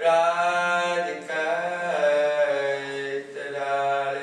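A man's solo voice chanting a prayer, unaccompanied, in long held, slowly gliding notes. The chant starts at once after a pause and breaks briefly about a second in and again just past three seconds.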